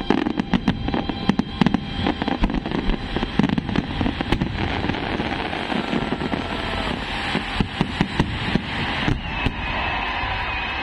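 Fireworks display: a dense, irregular run of sharp bangs and crackles from aerial shells bursting, thinning out near the end.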